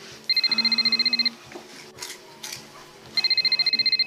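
Mobile phone ringing twice with an electronic trilling ring. Each ring is a fast-pulsing high tone about a second long, and the two rings are about two seconds apart; the call is answered after the second ring.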